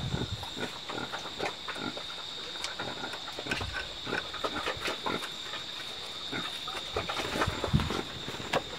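Scattered light clicks and taps of a hand tool working at a motorbike's rear wheel, over a steady high insect drone.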